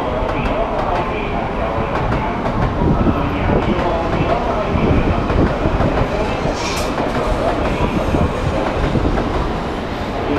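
Shinkansen bullet train rolling past along a station track, a steady rumble that grows louder in the middle and then eases, with a short hiss about seven seconds in.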